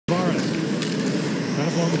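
Play-by-play commentary over the steady noise of an ice hockey arena crowd, with a couple of sharp clicks from play on the ice about a second in.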